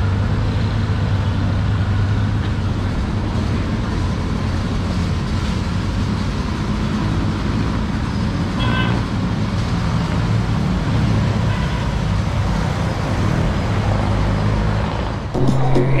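Honda Gold Wing's flat-six engine idling steadily, with street traffic behind it, while the bike is eased backward and forward in its reverse mode. Near the end, music with singing cuts in.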